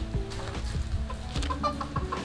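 Chickens clucking nearby in a few short calls, over quiet background music.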